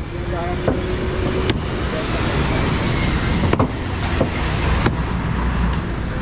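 Traffic passing on a wet road, a steady hiss of tyres on water that swells about a second in and holds. Three sharp chops of a heavy curved knife into a wooden cutting block cut through it, spread a second or more apart.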